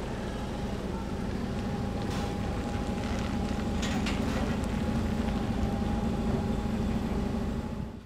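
Irizar coach's diesel engine running as the coach rolls slowly past, a steady hum that grows a little louder, with two short hisses about two and four seconds in, fading out at the end.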